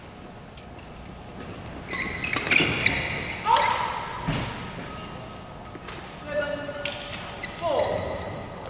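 Badminton players' voices and shouts echoing in a large sports hall between points, starting about two seconds in, with short squeaks of shoes on the court mat and a single thump a little past halfway.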